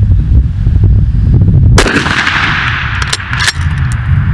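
A single rifle shot about two seconds in, with a long echoing decay, followed about a second later by two or three short sharp ticks.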